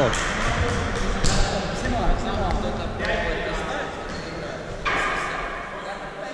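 A volleyball bouncing on a hard gym floor, a few separate knocks, while players' voices echo around a large sports hall.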